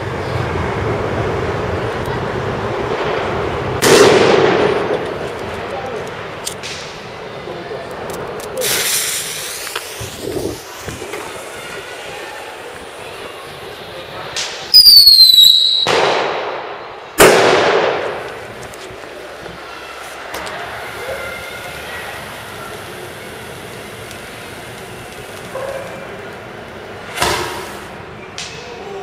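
Firecrackers going off in a street: a handful of sharp bangs spread out with echoing tails, and about halfway through a whistling firework gives a short falling whistle before it cracks.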